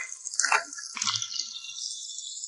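Egg-yolk-coated crabs frying in oil in a wok: a steady high sizzle, with a couple of short soft knocks in the first second or so.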